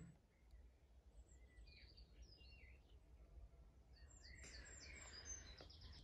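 Near silence: room tone with a few faint bird chirps in the background.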